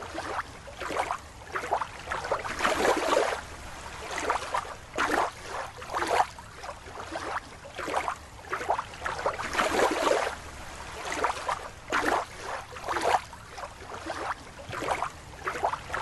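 Water splashing and sloshing in short, irregular bursts, roughly one a second.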